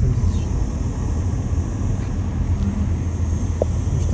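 Car driving, with the steady low rumble of engine and road noise heard from inside the cabin.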